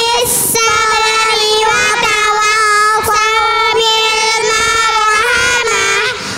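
A group of young children singing together into microphones, drawing out long held notes with short breaks between phrases.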